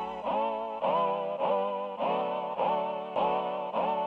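Roland Fantom synthesizer playing a repeating note pattern, about two notes a second, each note bending up into pitch as it starts.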